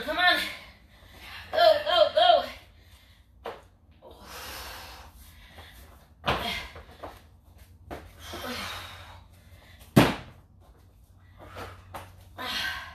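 Dumbbell workout sounds: a short burst of voice about two seconds in, a couple of breathy swells, and a few light knocks. About ten seconds in comes one sharp thud on the rubber gym floor.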